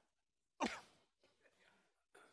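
A man's loud, short sigh with a steeply falling pitch about half a second in, followed by a few faint murmured sounds.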